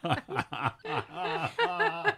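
People chuckling and snickering in short bursts of laughter, with voice sounds near the end.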